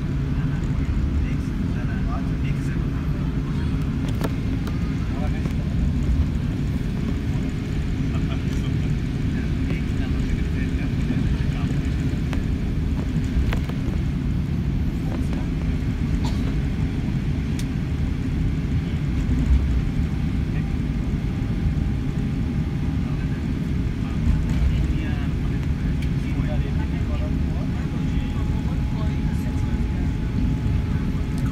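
Steady low rumble inside the cabin of an Airbus A380 rolling along the ground after landing: engine and wheel noise heard from a window seat, with a faint steady hum.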